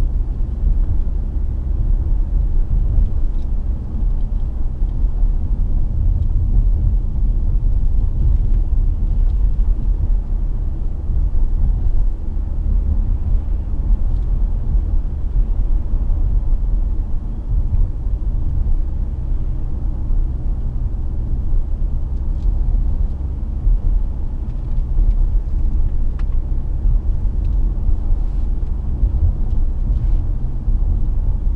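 Steady low rumble inside the cabin of a 2005 BMW 730d saloon on the move: road and tyre noise with its three-litre straight-six turbo-diesel running underneath.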